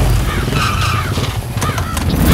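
Motorcycle engines running as a rider comes up the lane and pulls to a stop.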